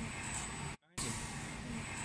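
Steady machine-shop noise from a FANUC α-D14MiA machining center running behind its closed door, with a faint thin high tone. The sound cuts out briefly just under a second in.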